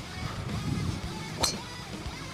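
A golf driver striking the ball once, a single sharp crack about one and a half seconds in, over background guitar music.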